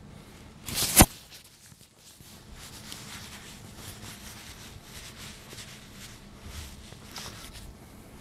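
A single sharp crack about a second in, led by a brief rising rush, over quiet room tone with faint rustles.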